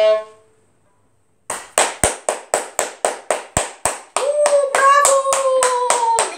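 A violin's last bowed note dies away just after the start. After a short silence, hands clap in an even rhythm, about four claps a second, and from about four seconds in a voice joins with one long, slightly falling note.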